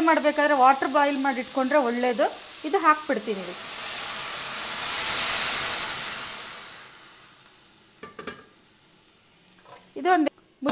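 Water poured from a steel kettle onto hot sautéed vegetables in an aluminium pressure cooker, hissing and sizzling as it hits the pan. The hiss swells to its loudest about halfway through and dies away a couple of seconds later.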